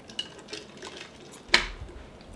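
A drink tumbler set down on a hard tabletop with a single sharp knock about one and a half seconds in, after a few faint small sounds of drinking and handling.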